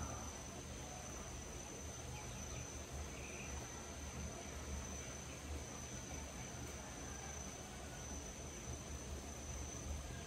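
Crickets trilling as one steady, unbroken high-pitched tone, over a faint hiss of outdoor background noise.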